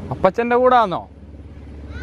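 A single spoken word with a falling pitch, over a low steady rumble.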